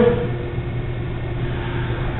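Steady low hum and rumble of room background noise, with no distinct events.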